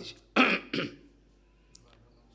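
A man clearing his throat once: a short rasp followed by a brief voiced grunt in the first second, then quiet.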